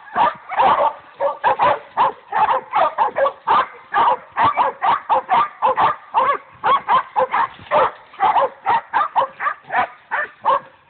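Pack of young hog dogs baying a cornered hog, barking rapidly and without a break, several barks a second.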